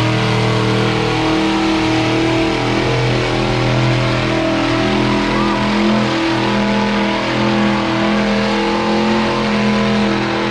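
Off-road vehicle's engine held at high revs under full throttle, a loud steady drone with small shifts in pitch, as it climbs a steep dirt hill with its wheels spinning and throwing dirt.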